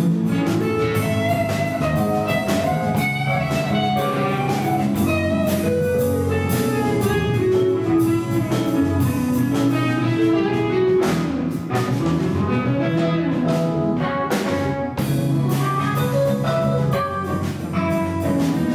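Live jazz quartet playing: an electric guitar plays a winding solo line over electric bass, drum kit with cymbals, and keyboard.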